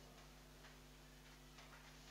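Near silence: faint scattered ticks of a marker writing on a whiteboard over a low steady hum.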